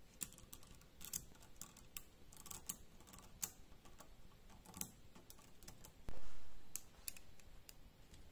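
Small magnetic balls clicking as they snap onto a magnetic-ball sculpture: irregular sharp clicks, roughly two a second, with one louder dull thump about six seconds in.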